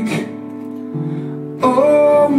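Live acoustic guitars strumming, a chord ringing on in the gap between sung lines and a second strum about a second in; a man's singing voice comes back in about one and a half seconds in.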